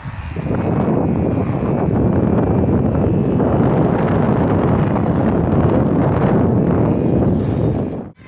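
Wind blowing across the microphone: a loud, steady rumble that cuts off suddenly at the end.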